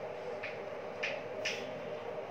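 Chalk tapping and scratching on a blackboard during writing: three short sharp clicks, over a steady hum.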